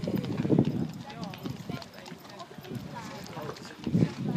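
A horse's hoofbeats on a sand arena, with people talking in the background. The thuds are strongest in the first second, then the sound drops quieter until a loud thud at the very end.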